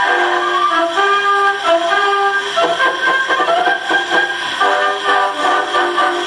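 A brass band playing a march, reproduced acoustically from a 1901 disc by a 1914 wind-up Victrola's steel needle and built-in horn. The sound is thin, with little bass or treble, over a light surface hiss.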